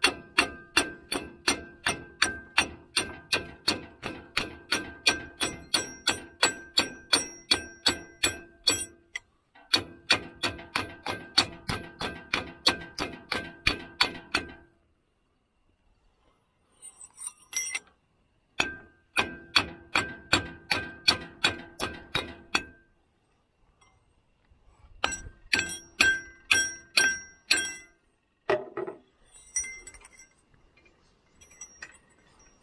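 Hydraulic cylinder rod on a John Deere 410 loader yanked in and out by hand as a slide hammer, knocking the gland out of the barrel. Each stroke is a ringing metal clank, about three a second, in runs broken by short pauses.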